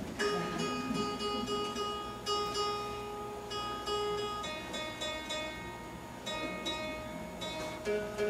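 Mountain dulcimer being tuned: single strings plucked and left to ring, a new note every second or so.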